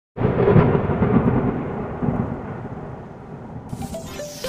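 A thunderclap that breaks in suddenly and rumbles on, slowly fading. Electronic music starts just before the end.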